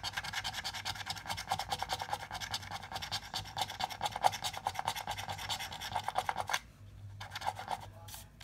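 A coin scraping the coating off a scratch-off lottery ticket in rapid back-and-forth strokes. The strokes stop abruptly about six and a half seconds in, and a short burst of scratching follows near the end.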